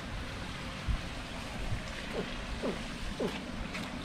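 Steady splashing of water spilling from a spa into a swimming pool, with a soft thump about a second in.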